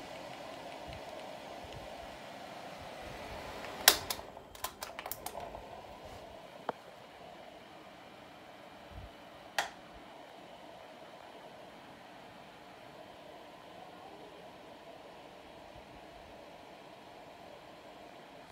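A Dyson AM06 bladeless desk fan and a Status tower fan running together on low speed with oscillation, a steady airflow hum. A quick run of sharp clicks comes about four seconds in, with single clicks near seven and ten seconds, and the hum settles slightly quieter after about six seconds.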